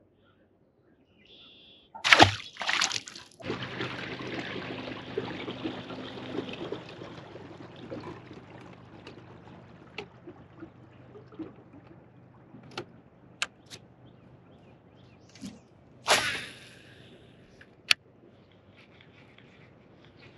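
Water splashing beside a fishing boat: a loud splash about two seconds in, then sloshing and trickling water with a faint low hum under it, fading away over several seconds. A few light clicks and a short rush of noise follow later.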